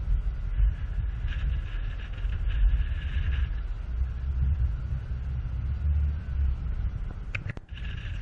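Wind buffeting a microphone high on a skyscraper rooftop: a heavy, uneven low rumble that drops out briefly near the end.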